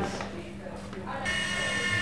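Small electric fixed-pitch RC helicopter (Blade mSR) starting up: its motor whine comes in abruptly a little over a second in and holds steady and high-pitched.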